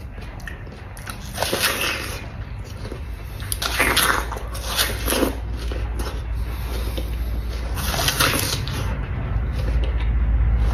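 Knife peeling the skin from a yellow pear, held close to the microphone: several crisp scraping strokes, about four of them, over a low steady hum.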